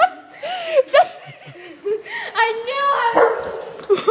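A dog yipping and barking in excited play, a run of short high calls.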